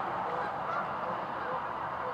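A large flock of geese honking: a steady chorus of many overlapping calls, with no single call standing out.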